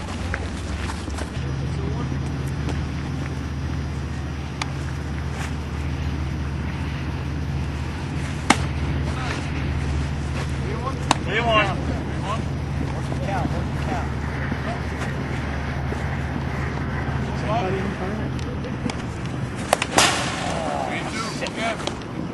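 Distant, indistinct voices of players calling out over a steady low rumble, with a few sharp knocks, the loudest about 20 seconds in.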